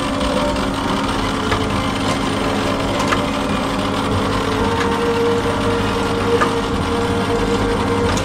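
A steady low mechanical hum with a held tone that joins about halfway through, and a few faint clicks.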